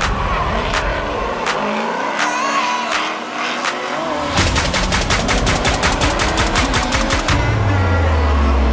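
Drift cars' engines revving and wavering in pitch during a tandem slide. This is followed by a rapid string of sharp cracks from an engine, about eight a second for some three seconds. Electronic music comes in near the end.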